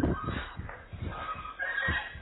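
A few drawn-out, pitched animal cries, the longest near the end, over a low background rumble.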